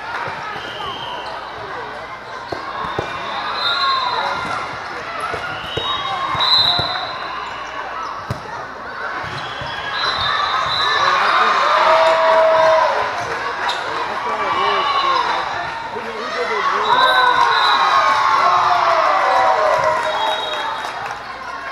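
Indoor volleyball play in a large hall: the ball being hit and bouncing on the court amid many overlapping voices of players and spectators, with brief high tones now and then.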